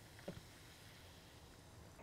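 Near silence: hard apple ale being poured faintly into a hot dish of buttery onions and apple, with a soft tick about a quarter second in.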